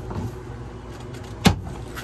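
A wooden cabinet door being pulled open, with one sharp knock about one and a half seconds in.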